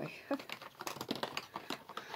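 Makeup products and their packaging being handled in a hurry: a string of quick crinkles and small clicks, with a brief low murmur of voice.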